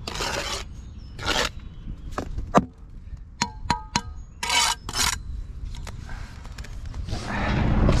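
Steel brick trowel scraping excess mortar off a course of bricks in several short strokes, with a few sharp, briefly ringing taps of the trowel on the bricks in the middle.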